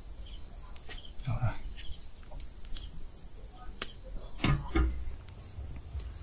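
Crickets chirping steadily, a row of short evenly spaced high chirps, with two brief low murmurs and a sharp click partway through.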